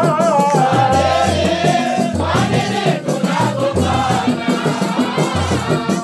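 Islamic devotional song sung by a group of voices, with a steady, regular drum beat and a shaker rattling along.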